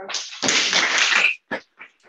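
Brief applause: a dense burst of clapping that cuts off after about a second and a half, followed by a few scattered claps trailing away.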